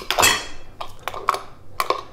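Metal clinking from a 3/16-inch hex-bit driver working the steel bolts and handle parts of a PowerBlock adjustable dumbbell. It opens with a sharp click and a ringing clink, followed by a few lighter scattered clicks.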